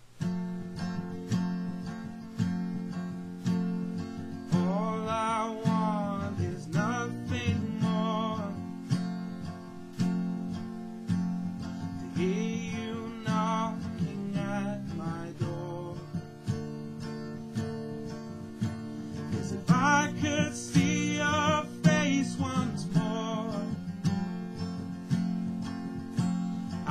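Steel-string acoustic guitar strummed in a steady, slow chord pattern, about one strum a second. A man's voice sings long wavering notes over it in three phrases, with no clear words.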